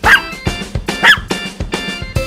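Upbeat children's background music with a regular beat, with a dog barking twice, about a second apart.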